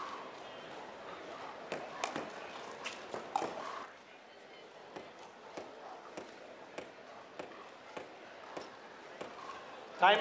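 A pickleball bounced over and over on a hard indoor court before a serve: short sharp taps about every 0.6 s through the second half, over the low murmur of an arena crowd.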